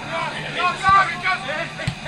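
Footballers shouting and calling to each other across the pitch, with a couple of low thuds, one about halfway through and one near the end.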